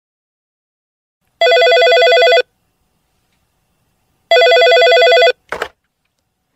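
A telephone ringing twice, each ring about a second long with a fast warble, followed by a short click near the end.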